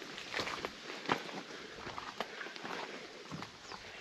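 Footsteps on a rough rock path: irregular taps and scuffs of feet on stone steps, a few a second.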